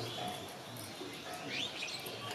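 Faint bird chirps against quiet room noise, a few short rising chirps near the end.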